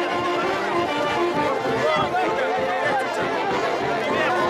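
A band with saxophones playing festive music, with several people talking close by over it.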